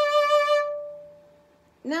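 Violin note D natural, bowed in first position on the A string: the second of a B flat to D pair, held steady for about half a second, then dying away.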